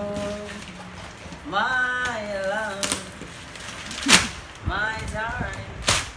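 Wrapping paper and tape being ripped off a gift box: three short, sharp tears, the loudest about four seconds in. Between them come drawn-out, wordless exclamations from a man's voice.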